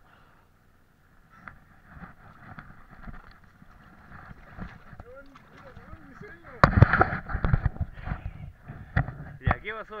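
Handling noise on the camera's microphone: low rubbing and rustling, then a loud flurry of knocks and scrapes about two-thirds of the way through, with a few more sharp clicks near the end.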